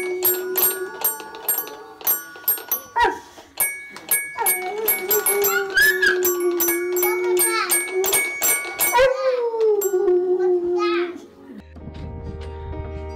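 A dog howling along with a toy xylophone that is struck rapidly, its bars ringing. The howl is one held note that breaks off, then comes back as a longer note that rises and slowly falls away. Near the end it cuts to different background music.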